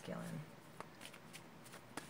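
A deck of oracle cards being shuffled by hand: faint, soft card clicks and rustles, several scattered through each second.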